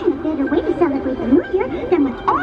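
Cartoon character voices from the fireworks show's recorded pre-countdown dialogue, high-pitched and played over loudspeakers, with little bass.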